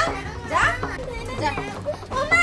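A young girl's high-pitched voice crying out wordlessly, with one rising cry about half a second in.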